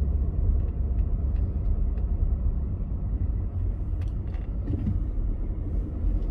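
Car driving on a street, its engine and tyre noise a steady low rumble heard inside the cabin.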